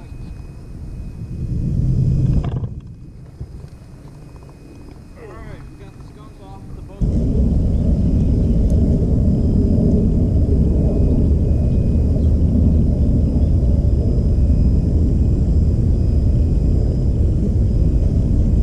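A loud, steady low rumble that starts abruptly about seven seconds in and carries on unchanged, after a quieter stretch with a brief swell of rumble near two seconds.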